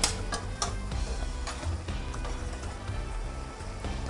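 Background music, with a metal spoon scraping and clinking against a four-quart stock pot as a thick ground-beef and vegetable mixture is stirred. A few sharp clinks come in the first second or so.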